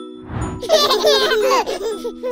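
A baby giggling in quick repeated bursts over a held chord of background music, just after a short hiss.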